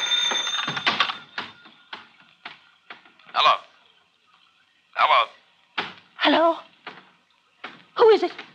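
A run of sharp knocks, several in the first three seconds at uneven spacing, then a few short bursts of a voice.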